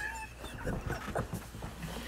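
Quiet, breathy laughter from men laughing almost silently, with short wheezing gasps.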